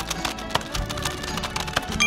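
Computer keyboard typing, a quick run of clicks over background music.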